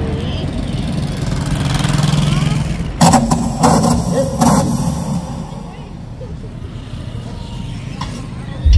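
A tractor-trailer truck passes close by with a steady low engine and tyre sound that fades out after about five seconds, followed by a car passing. Three loud sharp knocks come between about three and four and a half seconds in.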